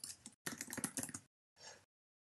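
Typing on a computer keyboard: a quick run of keystrokes for about a second, then one softer keystroke near the end.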